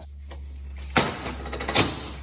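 Roller cassette of a Grifoflex side-rolling insect screen being knocked into its hooks on the door frame. A sharp knock about a second in, a few light clicks, then a second loud knock near the end as it hooks into place.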